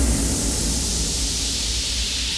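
A beatless break in an electronic dance track: a white-noise sweep thins out upward into a high hiss over a steady low sub-bass.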